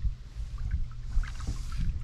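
A canoe paddle stroke: water swishing off the paddle blade about a second in, over a steady low rumble.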